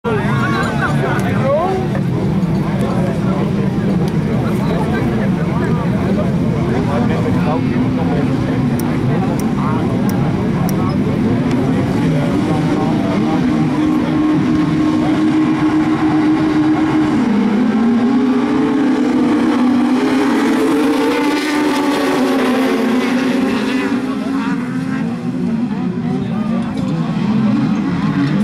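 A pack of 2000cc autocross sprint cars with their engines running together, revving and racing on a dirt track. The engine pitch rises and falls, dropping sharply about two-thirds of the way through and then climbing again.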